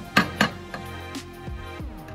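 Background music with two sharp metallic clacks close together early on, from an espresso grinder's doser lever being pulled to drop ground coffee into a portafilter.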